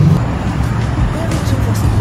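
City street noise with a steady low traffic rumble, under background music.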